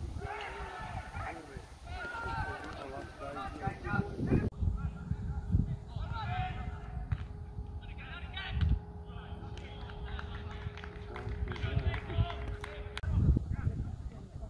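Footballers shouting and calling to each other across an outdoor grass pitch during play, with a few dull thumps.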